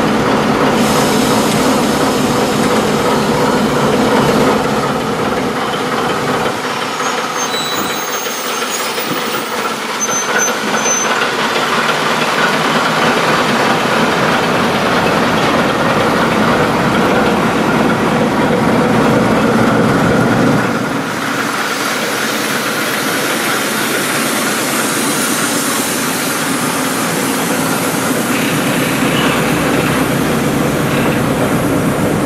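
ChME3 shunting diesel locomotive, with its six-cylinder ČKD diesel running, moving slowly past at the head of a train of covered hopper wagons. About two-thirds through the engine sound drops a little, and the rumble and clatter of the wagon wheels rolling over the track comes to the fore.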